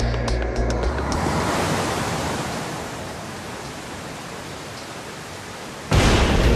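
Music with a bass pulse stops about a second in, giving way to a steady rush of flowing water that fades slightly. Just before the end a sudden loud surge of water crashes in.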